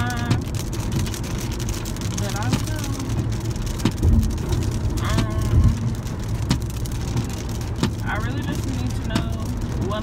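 Steady low road and engine rumble inside a moving Jeep Renegade's cabin. A few short snatches of a voice come through over it.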